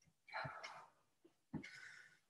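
Two faint, short effortful breaths about a second apart, each with a soft low thump, from a person working through resistance band walks.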